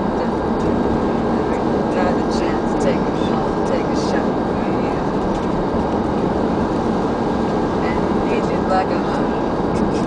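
Steady rumble of a moving bus, heard from inside the passenger cabin, with voices over it.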